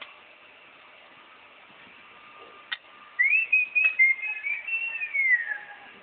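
A person whistling a short tune of a few stepped notes that ends in a falling glide. There is a sharp click just before the whistling starts and another partway through it.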